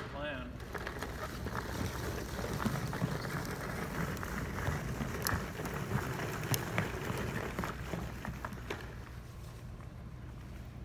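Plastic wheels of a toddler's push walker rolling across a hardwood gym floor: a steady rumble with scattered small clicks and knocks.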